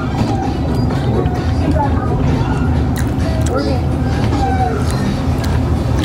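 Restaurant background sound: a steady low hum with faint music and distant voices, and a few small clicks.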